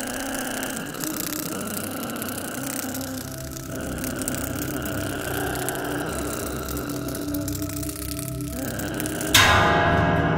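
Horror film score: layered sustained tones, then a sudden loud hit near the end that rings on.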